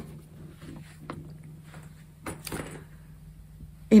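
Quiet room with a low steady hum and a few faint rustles and small knocks of things being handled, with a brief louder rustle about two and a half seconds in.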